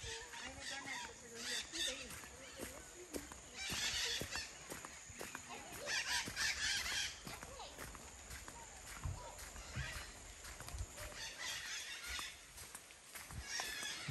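Quiet outdoor forest ambience: faint distant voices in the first few seconds, and several short hissing bursts about two seconds apart that rise and fade, with a few faint knocks.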